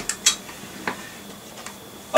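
A few light clicks and taps of small hard objects being handled and moved about, a pair close together just after the start and a couple more spread through the rest.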